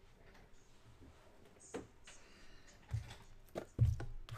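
Cardboard trading-card hobby boxes being handled: a few short knocks and rubs as a box is slid off the stack and lifted, with a couple of louder thumps near the end.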